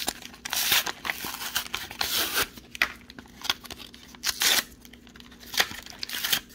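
A trading-card blister pack being torn open by hand: plastic packaging tearing and crinkling in a series of short, irregular bursts.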